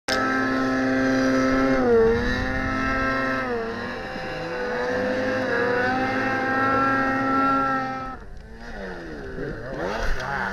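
Snowmobile engines running at high revs while climbing in deep powder, the pitch held mostly steady with short dips about two and three and a half seconds in, and a second engine weaving in pitch beneath it. Near eight seconds the sound drops away, then the engine pitch swings up and down.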